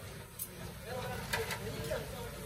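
Indistinct voices of people talking in the background, with a few short clicks.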